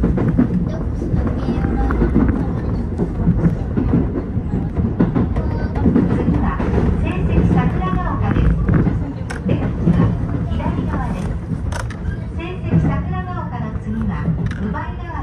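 Keio 8000 series electric train running on track, heard from inside the front car: a steady low rumble of wheels and motors, with a few sharp clicks in the second half.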